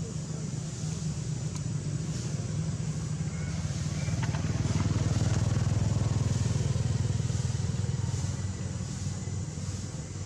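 A vehicle engine passing by: a low engine hum swells to its loudest about five to six seconds in, then fades again.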